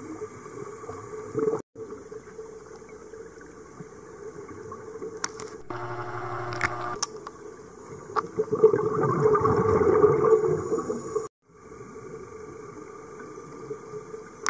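Muffled underwater noise with a louder gurgling rush of a scuba diver's exhaled bubbles from about eight and a half to eleven seconds, and a brief buzzing tone a little before it. The sound cuts out completely twice for a moment.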